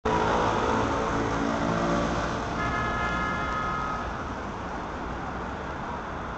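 Road traffic: a motor vehicle passes close by, loudest in the first two seconds and then fading. A steady high-pitched whine joins in for about a second and a half in the middle.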